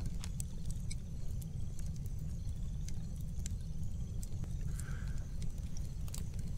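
Logs burning in a wood fire: scattered crackles and pops over a steady low rumble.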